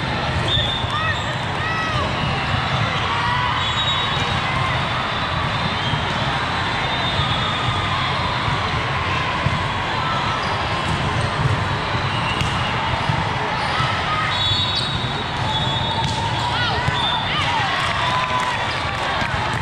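Busy volleyball hall din: many voices chattering, sneakers squeaking on the court floor, and the ball being struck in a rally, all echoing in a large hall.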